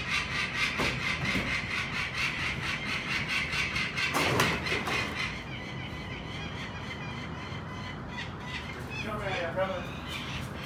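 Adult peregrine falcon giving its rapid, repeated harsh 'kak-kak-kak' alarm call, a fast even run of notes that stops about halfway through, followed by a few short sliding calls near the end. The cacking is the falcon's alarm at a person climbing up toward its nest.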